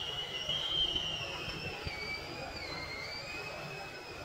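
A long, high-pitched squeal: one steady tone that glides slowly down in pitch in a couple of small steps over about five seconds, above a low background noise.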